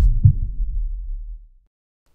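Deep low transition sound effect: a sharp click, then two heavy thuds about a quarter second apart, like a heartbeat, fading out over about a second and a half.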